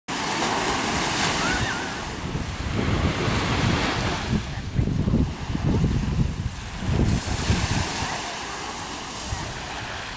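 Ocean surf breaking and washing up the beach, with wind buffeting the microphone in irregular gusts through the middle.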